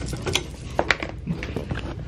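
A string of sharp clicks and rattles over a low steady hum, with a couple of louder clicks a little under a second in.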